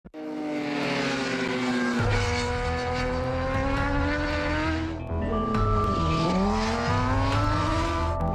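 Kawasaki racing sport bike engines at high revs on a race track. The engine note falls through the first two seconds, then a second bike comes in; just after six seconds its revs drop sharply and climb again as it slows into a corner and accelerates out.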